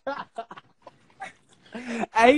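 A man laughing in short, breathy bursts.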